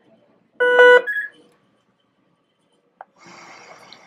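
Philips Respironics V60 ventilator powering up: a loud start-up beep lasting under half a second, followed at once by a shorter, higher tone. About three seconds in comes a click, then a steady hiss of the blower and air moving through the circuit.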